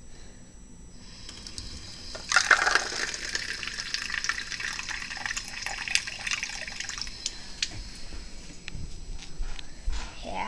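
Tap water running into a small paper cup over a stainless-steel sink. The stream comes on strongly about two seconds in and eases off around seven seconds.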